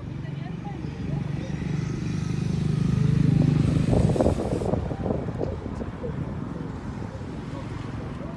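Road traffic passing close by, with one car going past loudest about three to four seconds in, its rumble swelling and then fading.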